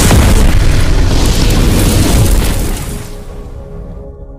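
Cinematic boom sound effect of a logo intro: a loud, deep burst of rumbling noise that fades after about three seconds, giving way to a held musical chord near the end.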